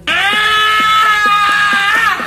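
A young man's voice holding one loud, high note for about two seconds, sung close to a shout, falling away at the very end. Acoustic guitar strumming runs underneath at about four strokes a second.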